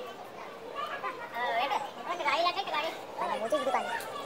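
Voices talking and calling out, among them high-pitched children's voices, loudest in the middle.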